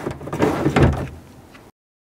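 Manual window crank on a Chevy Silverado 2500HD door being turned, the regulator winding the glass along its channel with a sliding, knocking sound. It is loudest in the first second, then fades and cuts off suddenly.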